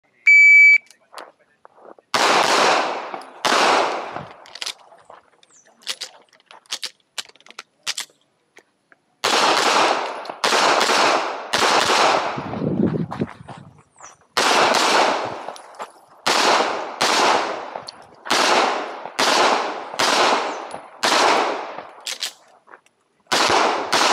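A shot timer's start beep, then a semi-automatic pistol with a muzzle compensator firing about twenty shots, mostly in quick pairs about half a second apart, in strings broken by pauses of several seconds. Faint clicks sound in the quiet stretch after the first shots.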